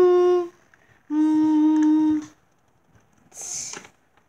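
A person humming long held notes on a steady pitch, two notes each lasting about a second, with a short break between; near the end a brief breathy hiss.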